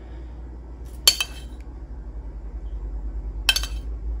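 A metal spoon clinks twice against a bowl, about a second in and again near the end, as marinade is scooped out to spoon over salmon.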